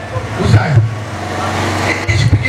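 Speech amplified through a PA system, over a steady low hum.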